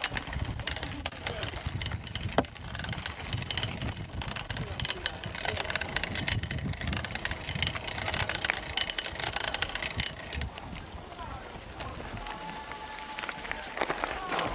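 Busy street ambience: indistinct voices mixed with passing traffic and many small clicks and knocks.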